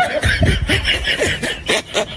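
Snickering and chuckling laughter in short, choppy bursts.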